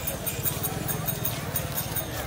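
Footsteps of a crowd walking on pavement, many short irregular clacks of sandals and bare feet, over a murmur of voices.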